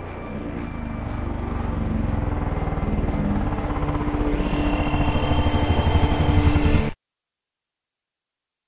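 A cinematic sound-design build-up: a fluttering, rumbling whoosh that swells steadily louder, with a high whine joining about halfway through, then cuts off abruptly into dead silence near the end.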